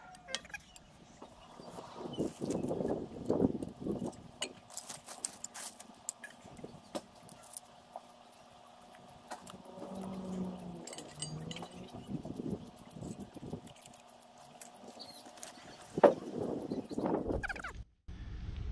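Metal camping cookware being handled and assembled: pot, frying pan, lid and wire pot stand clinking and knocking against each other, with one louder knock near the end.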